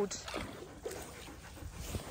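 Faint sloshing of shallow lake water around a wading Alaskan malamute's legs, with a few soft splashes.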